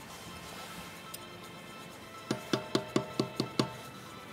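A soft-faced mallet tapping the metal collets down onto a car's wheel nuts to level them. The quick, even taps start a bit over two seconds in, about four a second, each with a short clinking ring.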